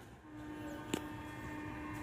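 Distant locomotive horn giving one steady, single-tone blast held for about two seconds, over a low diesel rumble: a train signalling its departure. A sharp click comes about a second in.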